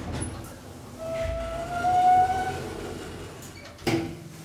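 Elevator car and landing doors opening at a floor: a door-operator motor whine rising slightly in pitch for about a second and a half over a low rumble, then a sharp clunk near the end as the doors reach the open position.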